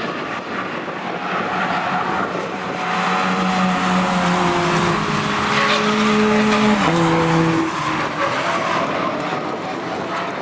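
Racing car engines passing on the circuit: one engine note climbs slowly, then drops in pitch about seven seconds in as the car goes by, over a steady wash of noise.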